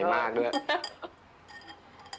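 A short spoken line, then several light clinks of tableware as people eat at a table, most of them about half a second to one second in.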